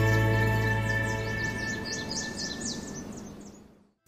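TV show title jingle: a held musical chord that fades out over about four seconds, with quick bird-like chirps layered over it from about half a second in until about three seconds.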